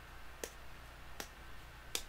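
Three sharp small clicks, about three-quarters of a second apart, the last the loudest, over a faint steady hum.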